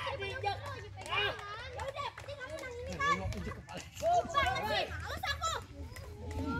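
Children's voices outdoors: girls talking and calling out over one another as they play, with a steady low hum underneath.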